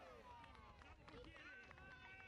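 Near silence, with faint, distant voices calling out.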